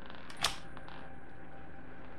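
Trading cards being handled: one sharp tap about half a second in, then a few faint clicks as the cards are gathered into a stack in the hands.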